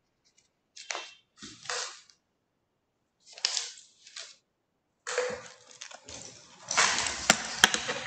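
Irregular rustling and scraping noises close to the microphone, growing longer and louder in the second half, with two sharp clicks near the end.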